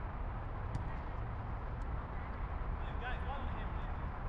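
Distant players' voices calling out across a football pitch over a steady low rumble, with a few faint sharp clicks.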